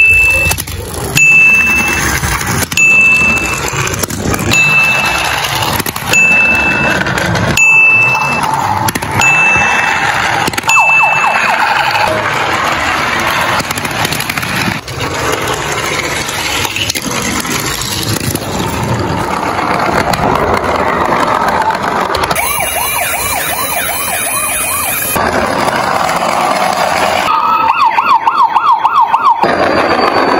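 Electronic sirens from battery-powered toy emergency vehicles, several sounding together. For the first ten seconds or so a high beep repeats about every second and a half, and near the end a fast warbling siren comes in.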